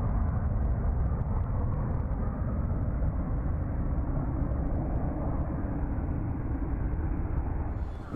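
Steady, muffled rumble of a jet aircraft in flight.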